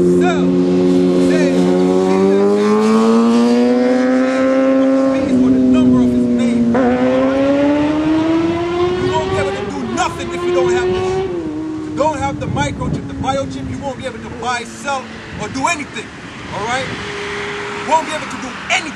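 A passing motor vehicle's engine accelerating through its gears. The engine note climbs, dips at each gear change about 5 and 7 seconds in and climbs again, then settles and fades. A few short knocks follow near the end.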